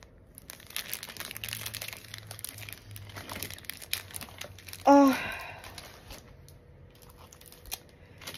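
Clear plastic bags of diamond-painting resin drills crinkling as they are handled. A short voiced sound cuts in just before five seconds and is the loudest moment.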